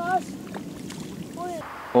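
Water splashing and sloshing as a barbel is let go from a landing net into the river, with two short voice sounds.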